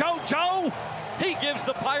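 Excited high-pitched voices shouting in short calls, with a few sharp smacks among them.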